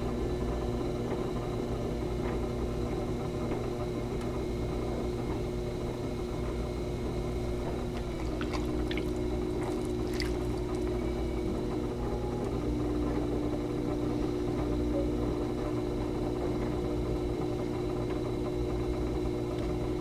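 Electric potter's wheel running steadily with a motor hum, its pitch shifting slightly about halfway, under the wet slide of hands and water on spinning clay as a cylinder wall is pulled up. A few light splashes near the middle as the hands are wetted again.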